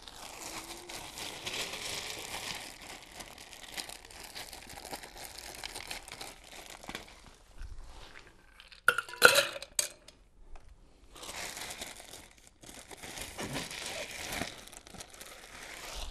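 Ice cubes dug out of an ice chest by hand, a rustling, crunching clatter, then a few sharp clinks about nine seconds in as cubes drop into a metal cocktail shaker, followed by more digging for ice.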